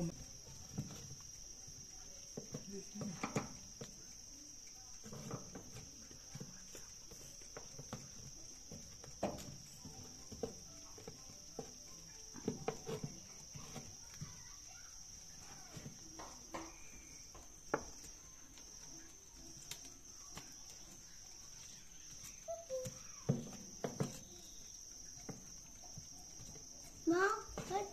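Steady high-pitched chirring of insects, likely crickets, with scattered light knocks and clatter and faint distant voices over it.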